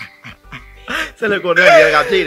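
People laughing hard, with a loud, high-pitched burst of laughter in the second half.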